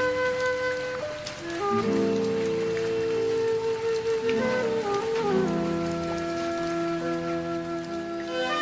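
Chinese bamboo flute playing a slow melody of long held notes that step down near the middle, over a backing track of sustained accompaniment chords.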